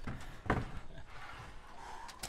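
A single dull knock about half a second in, over faint, steady background noise.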